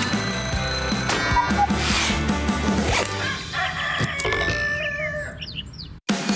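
Jingle music of an animated bumper, with a cartoon alarm-clock ring among its sound effects. The music fades over the last few seconds and cuts off at the end.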